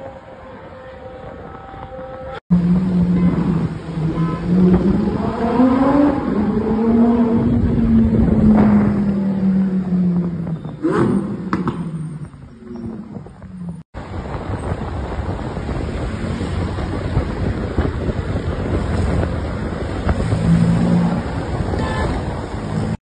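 Lamborghini Huracán Performante's naturally aspirated V10 revving in traffic, its pitch climbing and falling over several seconds, with a few sharp cracks from the exhaust around the middle. Before it there is a short, quieter stretch of passing engine, and after it steady road and traffic noise.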